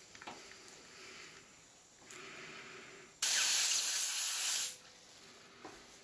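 Compressed air hissing out of a PCP airgun regulator test rig fed from an air cylinder, as the rig is bled down after the leak test. A softer hiss comes about two seconds in, then a loud hiss lasts about a second and a half and cuts off sharply.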